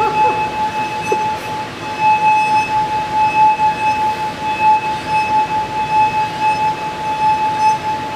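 Round glass fish bowl filled with water, sung by a fingertip rubbed around its rim: one steady, clear ringing tone with a fainter higher overtone, swelling and easing slightly as the finger circles.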